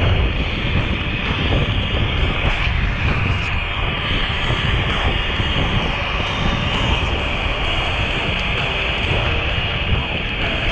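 Steady wind rumble on an action camera's microphone on a moving bicycle, a constant low roar with no breaks.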